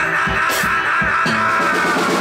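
Blues rock band playing live: a long held high note, sinking slightly in pitch toward the end, over a few drum hits, with the bass coming in about halfway through.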